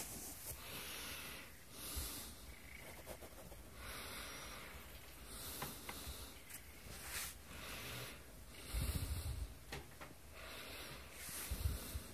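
Slow breathing close to the microphone, a soft hissing breath about every two seconds, with a couple of low bumps near the end.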